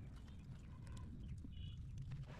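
Light, scattered plastic clicks and taps as a threaded plug is fitted onto a plastic water-pipe fitting, over a low steady rumble.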